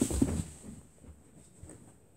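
A person dropping onto the floor: a thud and rustle of body and clothes that fade over the first half second, then only faint room sound.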